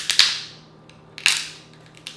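King crab leg shell cracked apart by hand, giving loud, sharp snaps: two close together at the start and another about a second and a quarter in.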